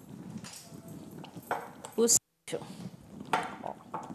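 Silicone spatula mashing and stirring a thick egg-yolk and mayonnaise paste in a glass bowl, with irregular soft scrapes and taps against the glass. The audio drops out briefly about two seconds in.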